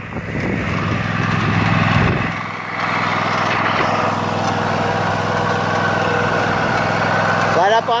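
Cub Cadet RZT S zero-turn riding mower's engine running steadily as it is driven, somewhat louder for the first two seconds and then settling a little lower.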